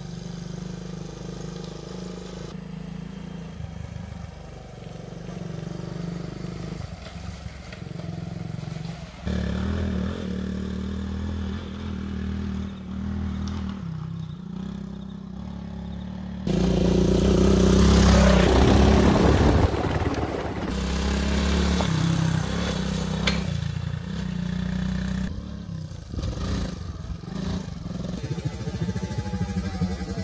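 Suzuki DR200's single-cylinder engine running as the bike rides along the trail, its note rising and falling with the throttle. It gets abruptly much louder about halfway through, where the bike runs close by.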